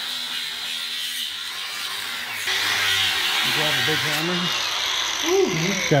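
Angle grinder cutting the cast mounting ear off the top of a transfer case housing. It is a steady high grinding that grows louder about two and a half seconds in as the disc bites harder.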